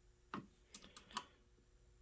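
A few faint, sharp clicks from the rotary selector switch of a REM CRT tester/rejuvenator being turned from one test position to the next: one click, then a quick run of about four.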